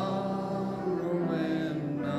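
Congregation singing a hymn together in slow, long-held notes.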